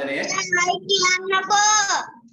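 A child's high voice singing, ending on a held note.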